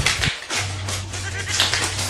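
Paper banknotes rustling and crinkling as they are handled and counted, over a steady low electrical hum. The tail of a high, wavering voice cuts off right at the start.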